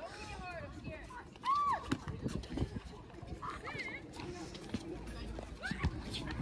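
Players shouting and calling out from across a hard court, with scattered thuds of feet and ball during play.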